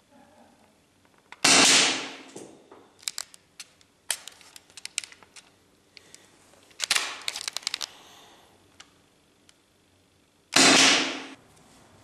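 Two shots from an Umarex T4E HDS68 .68-calibre paintball/pepperball marker, powered by a 12-gram CO2 cartridge, about nine seconds apart. Each is a sharp pop that fades over about a second. Between the shots come scattered clicks and rattles of the marker being handled.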